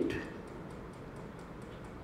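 A pause in a man's speech: faint hall room tone with light ticks recurring a few times a second.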